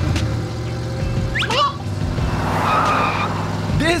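Cartoon car sound effects: a steady low engine hum as the car drives off, a quick rising whistle about a second and a half in, and a brief hissing screech around three seconds in.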